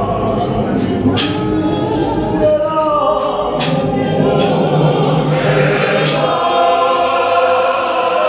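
Gospel mass choir of mixed voices singing in harmony, with the low part dropping out about six seconds in.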